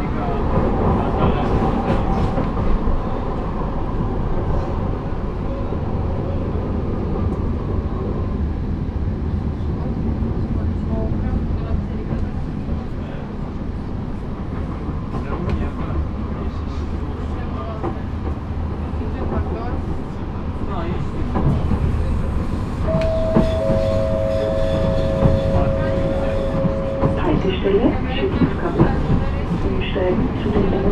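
Running noise inside a Badner Bahn (Wiener Lokalbahnen) light-rail car under way: a steady low rumble of wheels on track. A steady two-note whine sounds for a few seconds late on, and a few clicks come near the end.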